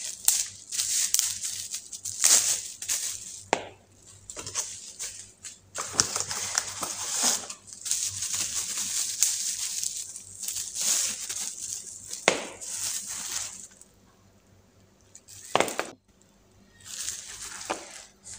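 Plastic bubble wrap crinkling and crackling in irregular bursts as it is pulled off a pepper mill, with a short pause near the end.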